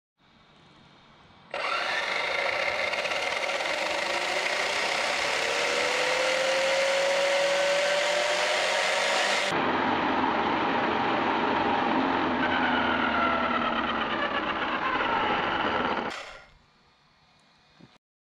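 Losi Tenacity truggy's electric motor and drivetrain whining at high throttle with the truck held off the ground, the wheels spinning fast enough to balloon the tyres. The whine starts suddenly about a second and a half in, climbs in pitch, then winds down and stops about sixteen seconds in.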